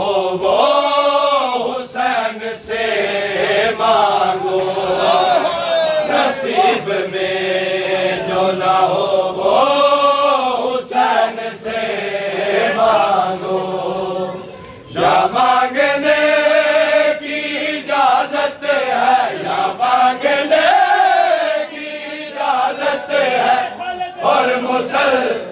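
Men chanting a nauha, a Shia lament for Hussain, led by a reciter with the crowd joining in, while hands slap on chests (matam) in a steady beat under the chant. The chant breaks off briefly a little past halfway, then resumes.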